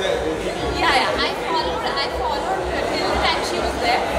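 Several people talking over one another: chatter of a crowd of reporters in an indoor hall.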